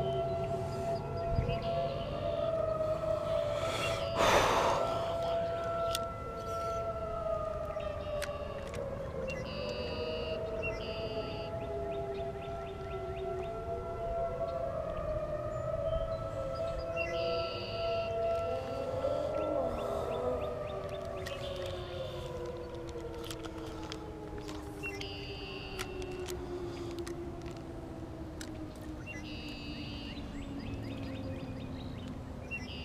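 Several sirens sound at once, each slowly winding up to a steady pitch, holding, then winding down, so that their wails overlap and cross. A single sharp knock comes about four seconds in.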